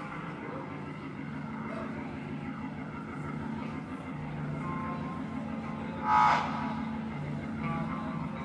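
Live rock band playing a quiet, sustained passage: held low keyboard and bass notes under electric guitar, with no heavy drumming. A short, loud pitched cry or squeal stands out about six seconds in.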